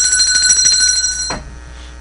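A high electronic ring with a fast trill, like a telephone or alarm ringer. It stops abruptly about a second and a half in.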